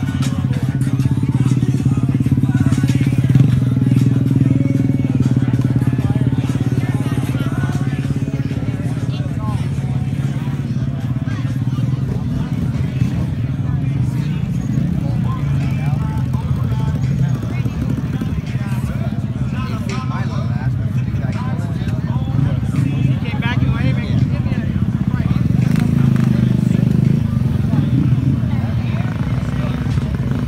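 Small motorcycle engines running nearby in a steady low drone that swells slightly near the start and again near the end, with people talking in the background.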